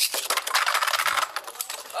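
Two Beyblade Burst spinning tops just launched into a plastic stadium, clattering and rattling rapidly as they spin and knock together, with a hissy scrape strongest in the first second.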